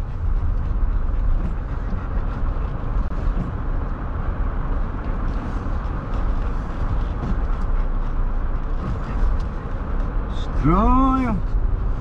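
Car driving, heard from inside the cabin: a steady low rumble of engine and road noise. A voice sounds briefly near the end.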